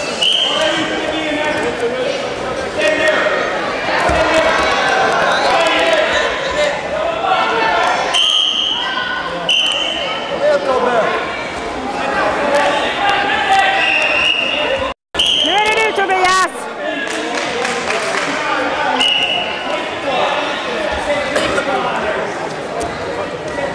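People talking and calling out in a large sports hall, with a few short, high squeaks scattered through. The sound cuts out for a moment about fifteen seconds in.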